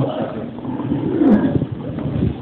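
Indistinct man's voice with no clear words, rough and unclear.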